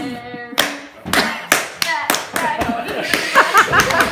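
Two people playing a hand-clapping game: a quick run of sharp hand claps, their own palms and each other's, at about three a second, starting about half a second in.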